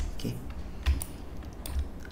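A few clicks from a computer keyboard and mouse, roughly a second apart.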